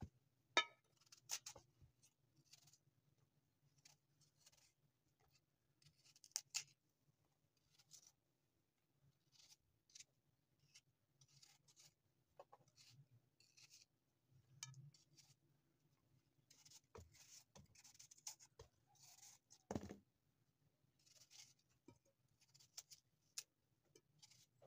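Large kitchen knife peeling and cutting a fresh apple by hand: faint, irregular crisp scrapes and small clicks as the blade shaves the skin and cuts the flesh. One duller knock comes late on.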